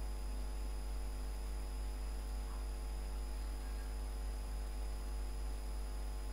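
Steady electrical mains hum picked up by the recording, with faint steady high tones over a light hiss. It holds unchanged throughout.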